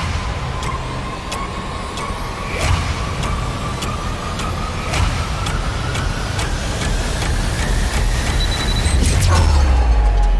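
Trailer sound design: a single tone that rises slowly in pitch under sharp clicks and impacts, punctuated by booming hits. The sound swells into a louder, longer boom near the end.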